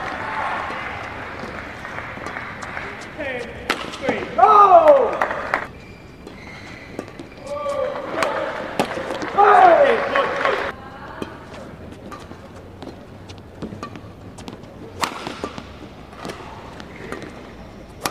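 Badminton rally: sharp clicks of rackets striking the shuttlecock, broken by two loud shouts from a player, one about four seconds in and another near ten seconds.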